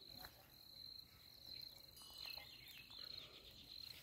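Faint chirping of crickets: a high, steady trill repeated in short pulses, with a quick run of falling chirps a little past halfway.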